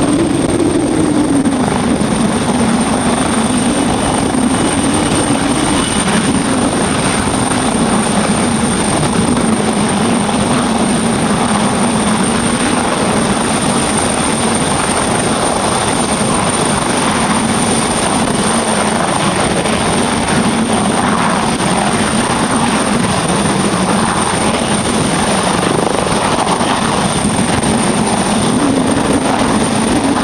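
Boeing MH-139A Grey Wolf helicopter's twin turboshaft engines and main rotor running steadily as it goes from the runway into a low hover. A high, steady turbine whine sits over the rotor noise.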